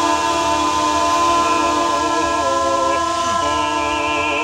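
Several voices singing a cappella, holding long steady notes together as a chord in improvised experimental vocal music.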